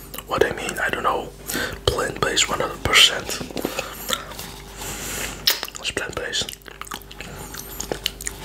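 Close-miked mouth sounds of licking coconut yoghurt off the fingers: wet lip smacks and clicks, with a longer breathy hiss about five seconds in.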